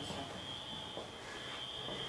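Quiet room tone: a faint even hiss with a thin, steady high-pitched whine.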